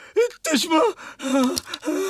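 A man's short wordless cries and gasps, several in quick succession, as he is grabbed and struck.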